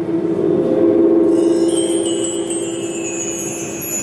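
Sustained chime-like tones: a steady low tone, joined about a second in by several high ringing tones that hold on together.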